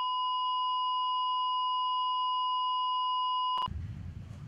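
A steady, pure electronic tone, like a test tone, held unchanged for over three seconds and cutting off suddenly near the end. Faint room sound follows the cut.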